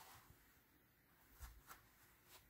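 Near silence, with a few faint rustles of stiff denim fabric being pinched and folded by hand, about a second and a half in.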